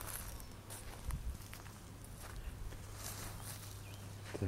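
Faint footsteps on loose, dry garden soil: a few scattered soft crunches over quiet outdoor background.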